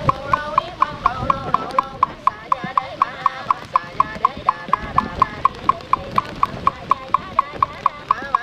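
Buddhist sutra chanting kept in time by a wooden fish (mõ) struck at a steady pace of about four knocks a second, the sharp knocks standing out over the group's chanting voices.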